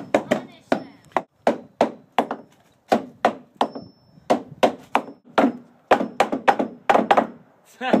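Several hand hammers driving nails into wooden deck boards: sharp wooden knocks in an irregular, overlapping stream of about two to three strikes a second as several people hammer at once.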